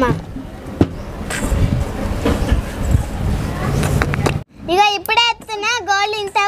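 A low background rumble with a few sharp clicks, then after an abrupt cut a young girl's high-pitched voice speaking for the last second or so.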